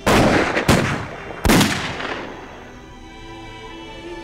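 Three loud gunfire blasts in quick succession, each trailing off, as sound effects for a film battle. Background music with held notes then takes over.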